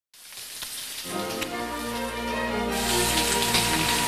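Beef steaks sizzling on a ridged grill pan, a steady hiss with scattered crackles that grows louder a little past halfway. Background music comes in about a second in and builds under it.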